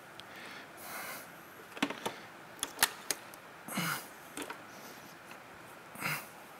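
Gloved hands handling the Mach-E's high-voltage battery junction box as it is lifted out. A soft rustle about a second in, then a few light clicks and knocks of plastic and metal parts between about two and three seconds in.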